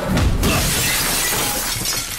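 Glass shattering in a long crash lasting more than a second, over background music.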